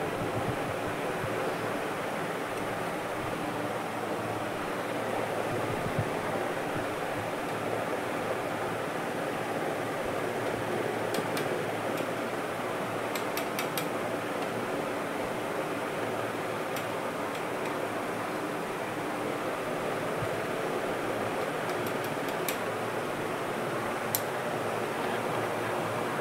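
Steady rushing of aquarium water circulation, like a filter's outflow, with a few faint light clicks in the second half.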